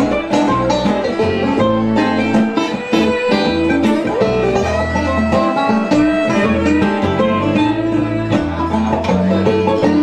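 Live bluegrass band playing an instrumental passage: a five-string banjo picking quick rolls over strummed acoustic guitar, with an upright bass walking low notes underneath.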